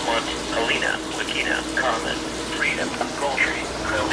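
A NOAA weather radio's voice reading a severe weather statement, thin and distant through the radio's small speaker, over a steady electrical hum.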